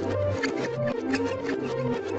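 Lively cartoon background music with a repeating bass line, melody notes above it and a steady beat.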